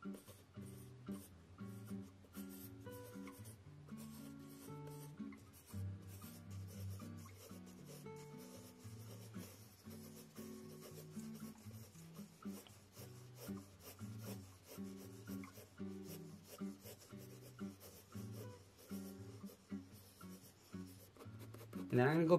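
Mechanical pencil with 2B lead scratching on sketch paper in many short, quick strokes, laying down texture in shading. Soft background music with a slow melody plays underneath.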